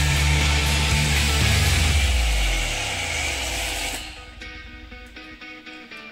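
A high-pressure washer's motor runs with the hiss of spray, then winds down with a falling pitch about two seconds in; the hiss cuts off abruptly about four seconds in. Guitar background music plays throughout and is left alone near the end.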